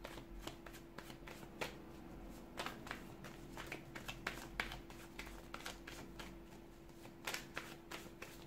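A deck of tarot cards being shuffled by hand: soft, irregular flicks and clicks of cards slipping against each other. A faint steady hum runs underneath.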